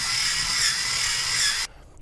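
Rotato Express electric potato peeler's small motor whirring steadily with a high whine as it spins a potato against the peeling blade. The sound cuts off suddenly near the end.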